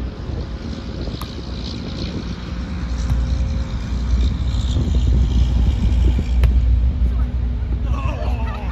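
Wind buffeting the microphone, a heavy low rumble that grows louder through the middle. A few short, sharp slaps from the volleyball being played cut through it.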